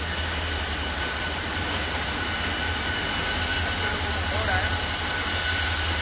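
Freight train rolling slowly past: a type J boxcar followed by the Renfe class 333 diesel locomotive. A steady low diesel drone runs under a continuous high-pitched wheel squeal, growing slightly louder toward the end as the locomotive draws near.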